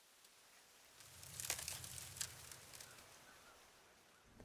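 Faint crackling and crinkling with a few small ticks, starting about a second in and dying away before three seconds.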